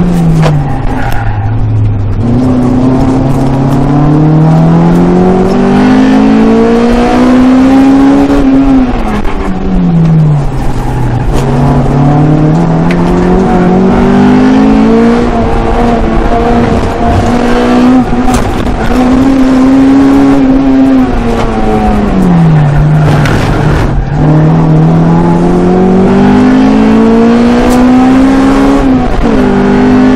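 Honda Integra Type R DC2's 1.8-litre four-cylinder VTEC engine at full effort on a circuit lap, heard from inside the cabin. The note climbs in pitch under acceleration and drops away when braking for corners, several times over, holding steady at high revs in between.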